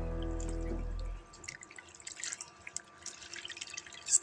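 Background music for about the first second, then it stops and faint splashing and dripping of water follows, with small scattered drips, as hands squeeze boiled banana flower shreds in a pot of water.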